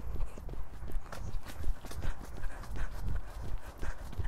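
Horse trotting on a wet sand arena, its hooves striking the soft footing in a steady rhythm of about two to three beats a second.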